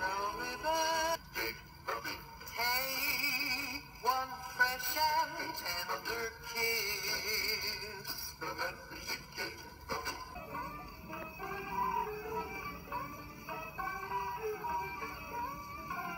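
A 78 rpm record of a song with a singing voice, played acoustically through a homemade phonograph: a steel needle on a cushioned diaphragm feeding a foil horn. About ten seconds in the sound turns duller, with the top end gone, as another recording takes over.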